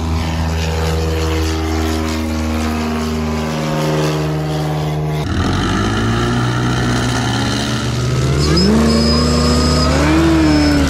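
A light propeller plane's piston engine running steadily for about five seconds. It then gives way abruptly to a Whipple-supercharged car engine, which idles and then revs, rising in pitch near the end with a high whine above it.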